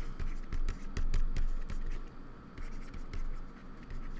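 Stylus scratching and tapping on a tablet while handwriting a word, in many short, irregular strokes.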